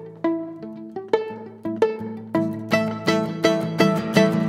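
Instrumental passage on acoustic guitar and a violin played pizzicato, the violin held across the chest and plucked like a mandolin. Plucked notes over ringing low guitar notes, coming faster and fuller in the second half.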